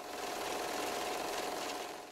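Editing transition sound effect: a steady, noisy mechanical whir with a faint hum in it, fading in at the start and out at the end.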